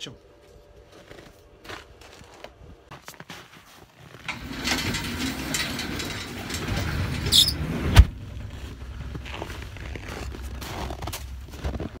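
A shed's garage-style door being pulled down by hand: it rumbles as it travels, gives one brief high squeal, and lands shut with a single loud bang about eight seconds in.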